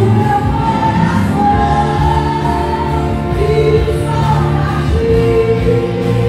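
Gospel worship song: a group of voices singing a sustained melody together over keyboard accompaniment and a steady bass.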